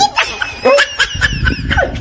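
A man sobbing and wailing in short, broken, high-pitched bursts: a theatrical mock cry of despair.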